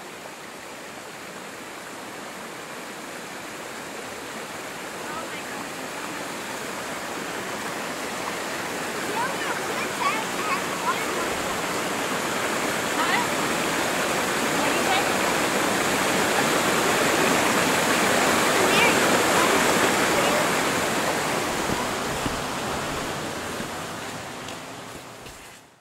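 Creek water rushing and splashing over rocks in a steady roar that grows louder toward the middle and eases off near the end.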